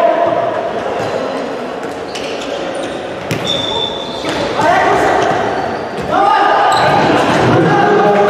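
Futsal match sound in an echoing indoor hall: players shouting to each other, with sharp knocks of the ball being kicked and bouncing on the wooden floor.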